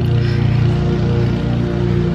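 Background music with steady, sustained tones and a full low end.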